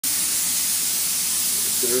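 Spray gun hissing steadily as compressed air atomizes waterborne base-coat paint.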